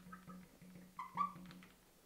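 Neon marker squeaking and tapping on a glass lightboard as a word is written, with a short burst of high squeaks about a second in.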